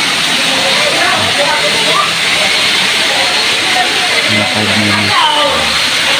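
A loud, steady rushing noise, with faint voices and music behind it.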